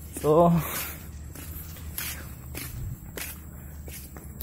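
Footsteps of a person walking up a path: a series of soft, irregular steps, after a brief vocal sound near the start.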